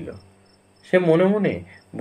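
Crickets chirping steadily in the background, a thin high trill pulsing about three times a second, under a short phrase of a man's voice reading aloud.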